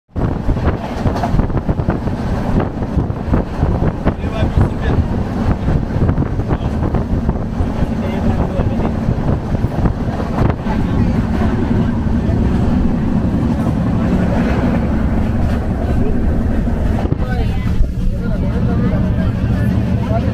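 Steady running rumble and rattling of a moving Indian passenger train, heard from inside the coach, with passengers' voices mixed in.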